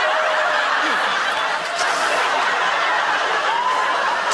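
Studio audience laughing, a loud, sustained wave of laughter from many people.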